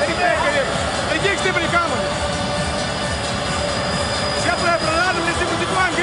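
A basketball coach speaking in Lithuanian in short phrases, giving instructions in a timeout huddle, over steady loud arena background noise and music.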